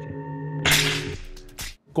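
A sudden loud swoosh that fades within about half a second, over a held background music chord. A second, shorter burst comes just before the end.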